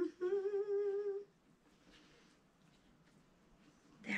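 A woman humming one steady, slightly wavering note for about a second, then only faint room tone.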